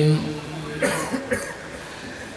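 A man coughs twice, briefly and close to the microphone, in a pause in chanted Arabic recitation; the last long recited note cuts off just after the start.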